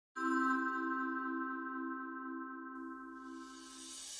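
Intro music: a single sustained electronic chord that sounds at once and slowly fades, with a soft airy whoosh building near the end.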